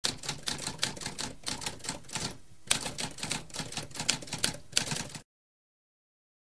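Typewriter typing: a quick run of key strikes, a brief pause about two and a half seconds in, then more strikes that stop about five seconds in.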